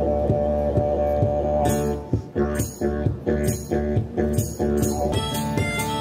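Acoustic guitar strummed in a steady rhythm over a sustained low drone, with a harmonica coming in near the end.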